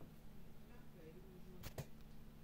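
Quiet room tone with a low steady hum, and two light clicks close together near the end, from handling.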